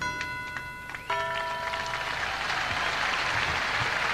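Closing notes of the freestyle music: a few held tones and then a final chord about a second in, which fade out. Crowd applause builds under them and carries on steadily.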